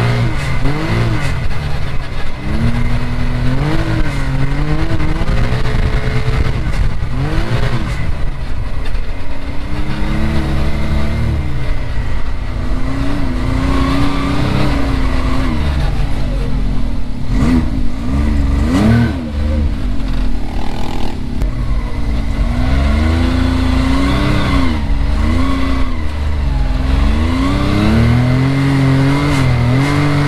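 Can-Am Maverick X3 side-by-side's turbocharged three-cylinder engine, heard from the cockpit, revving up and falling back again and again under the throttle while driven over sand, with rushing wind and dirt noise underneath.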